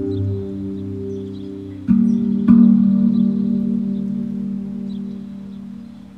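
Meditation music on a steel handpan-style drum: two notes struck about two seconds in, half a second apart, ringing on and slowly fading over a low sustained tone.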